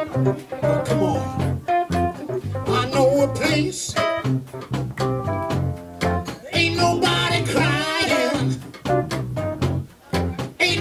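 Live soul band playing a laid-back groove: electric bass line, drum kit and keyboard, with a singer's wordless vocal line wavering over it in the second half.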